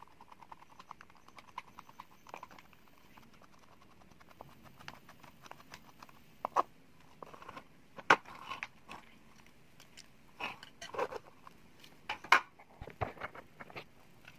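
A screwdriver turns a screw out of a plastic Aiphone intercom housing with a run of small quick ticks. Then come scattered sharp plastic clicks and knocks as the casing parts are handled and pulled apart, the loudest about 8 and 12 seconds in.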